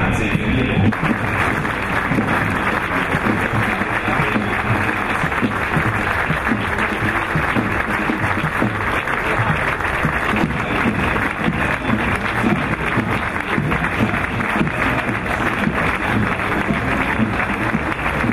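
Steady applause from a large crowd over parade band music.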